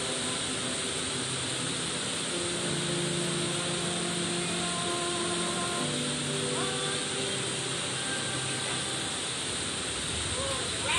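Steady rain on a metal building's roof, a constant hiss, under soft music with long held notes.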